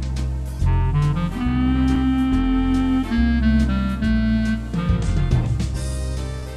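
Lowrey Legend Supreme home organ playing a swing-style jazz tune: a held, reedy lead melody over bass notes that step to a new pitch every second or so, with a steady drum beat underneath.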